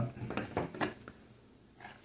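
A handful of light clicks and taps in the first second, from the camera being handled while it is refocused, then quiet.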